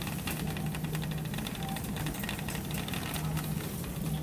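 Metal shopping cart rolling over a tiled store floor, its wheels and wire basket rattling in a steady fast clatter over a steady low hum.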